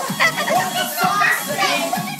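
A group of children shouting and chattering loudly over music with a steady beat.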